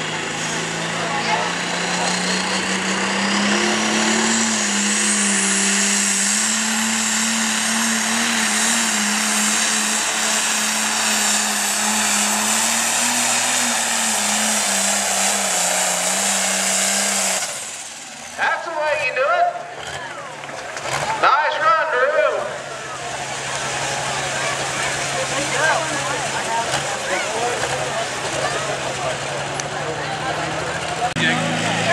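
Case International 7220 pulling tractor's turbocharged diesel engine running hard under load on a test pass, a turbo whine rising over the first few seconds and holding. About seventeen seconds in the engine drops off sharply; after a few seconds of irregular voices and noise it settles into a lower, steady run.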